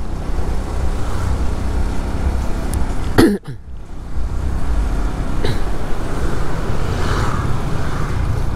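Road noise from a motorcycle riding along a wet street through light traffic: a steady low rumble of engine, tyres and rushing air. About three seconds in comes a single brief knock with a quick falling tone.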